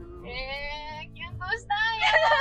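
A woman's voice, drawn out and sing-song, pitch rising slightly over about the first second, then a few short syllables, over quiet background music.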